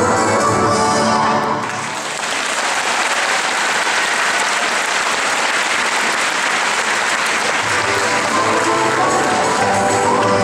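Music playing stops about a second and a half in, and a large audience's applause fills the hall. Music comes back under the clapping near the end.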